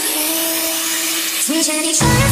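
Build-up in an electronic dance remix: the bass and beat drop out, leaving a rushing noise sweep over a single held note. Near the end a short note slides upward.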